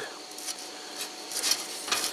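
Sheet-metal plate being slid by hand over a sheet-metal disc, with a few light scrapes and taps of metal on metal.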